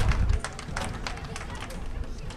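Outdoor sports-field ambience: faint, indistinct voices and scattered small clicks, with a low rumble on the microphone in the first half second.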